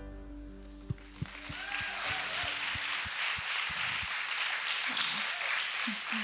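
A held music chord at the end of a video fading out over the first few seconds, as audience applause builds about a second in and carries on steadily.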